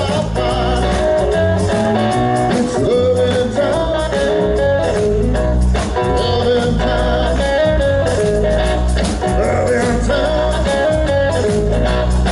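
Live blues-rock band playing: electric guitar, electric bass and drum kit, with a wavering, bending melody line on top.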